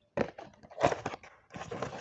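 Hands opening a cardboard perfume box: irregular scrapes and knocks, the loudest just under a second in, then a longer rubbing scrape as the box is worked open.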